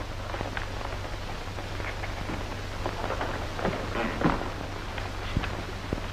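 Steady hiss and crackle of an old film soundtrack over a low hum, with faint scattered scratches.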